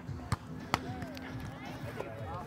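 Two sharp slaps of a volleyball being struck, less than half a second apart, over faint distant voices.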